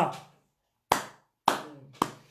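Two sharp hand claps about half a second apart, each dying away quickly.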